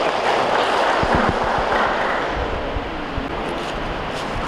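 Audience applause, a dense even clatter of many hands clapping, loudest over the first two seconds and then tapering off.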